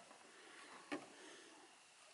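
Near silence: faint background hiss, broken by one soft click about a second in.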